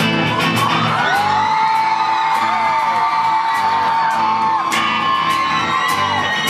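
Live rock band playing, with regular drum hits and guitar. A long, high, held note runs over the music from about a second in until near the five-second mark.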